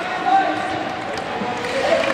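Indistinct chatter of spectators' voices in an ice hockey rink, with a few short knocks of stick and puck.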